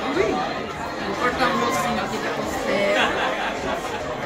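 Voices chattering in a busy restaurant dining room, several people talking at once.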